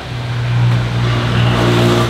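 A car engine idling: a steady low hum that starts just after the beginning and holds even throughout.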